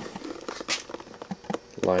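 Light handling noise: a few short clicks and faint rustling as a copper tube fitting is moved about in a cardboard box, then a man's voice starts near the end.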